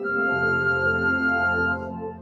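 Concert wind band playing a sustained chord, flutes carrying the top note over a low bass; the chord is released near the end and the music drops quieter.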